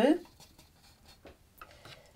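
A spoken word ending at the very start, then a quiet small room with a few faint, light clicks about a second in.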